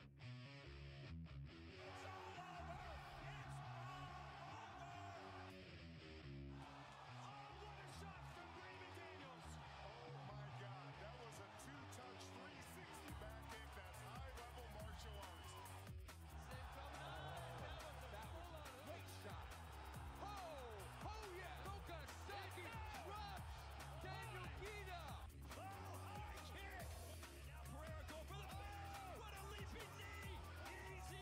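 Background music with a steady beat from a kickboxing broadcast's highlight intro, with voices mixed in.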